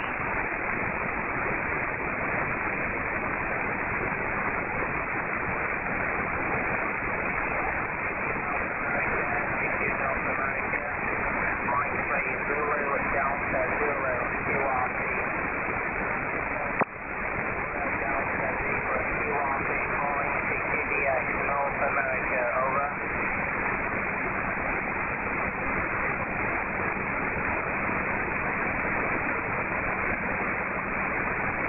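Perseus SDR receiver audio on the 20-metre band in upper sideband: steady band hiss, with a weak voice fading in and out under the noise around ten to fifteen seconds in and again around twenty seconds in. A single sharp click just past the middle is followed by a brief dip in the hiss.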